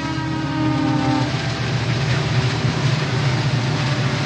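Train passing: its horn sounds steadily and stops about a second in, over the continuous rumble and rattle of the train on the track.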